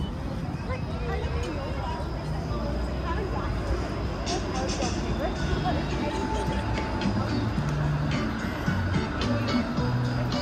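Busy city street sound: passers-by talking, with music playing and traffic running.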